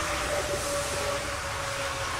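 Steady background noise with a faint continuous hum, picked up by a police body-worn camera.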